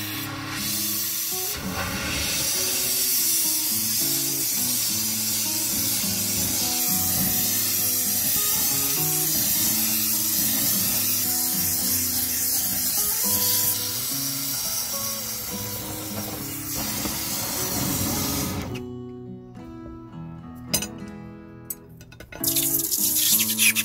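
Gas torch flame hissing steadily as it is played into a crucible, melting scrap silver, over background music. The hiss stops about 19 seconds in, followed by a few sharp metal clinks.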